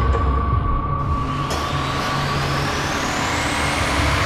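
Trailer sound design: a dense, rumbling noise drone with a steady high tone, and a rising sweep that climbs steadily in pitch from about a second in, building tension.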